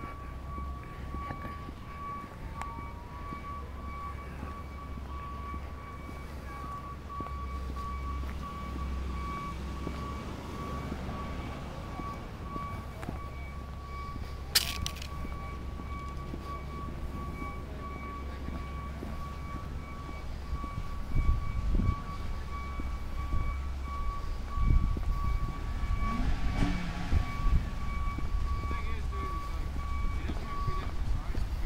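Outdoor ambience with a steady high-pitched tone running through it over a low rumble. A single sharp click comes about halfway, and in the last third irregular low thumps of wind buffeting the microphone are the loudest sounds.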